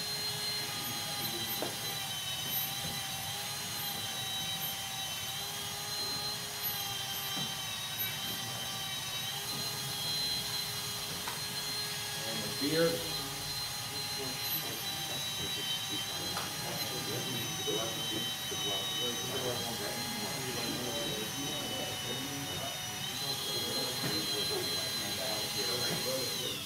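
High-speed electric rotary carving tool with a small bit, running steadily with a high whine while texturing hair detail into wood. Its pitch wavers slightly as the bit works, then falls as the motor is switched off at the very end.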